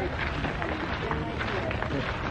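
Indistinct voices of people in a walking group talking in the background, over a steady low rumble.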